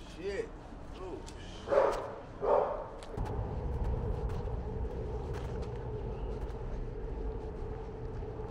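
A dog barks twice, loudly, about two seconds in. Then a steady low city-street rumble with a hum sets in and runs on.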